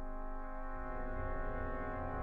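Brass band holding a sustained chord, with low brass notes entering underneath a little under a second in.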